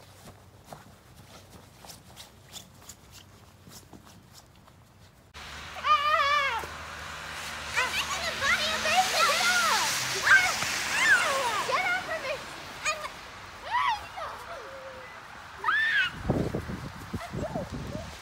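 Faint crunching steps in snow at first; then, from about five seconds in, children's high-pitched squeals and short calls, with a low rumble near the end.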